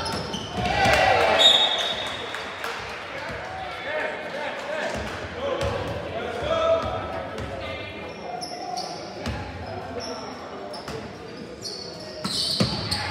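Basketball game sounds in an echoing school gym: the ball bouncing, sneakers squeaking on the hardwood court, and players and spectators shouting, with a swell of voices about a second in just after a shot at the basket.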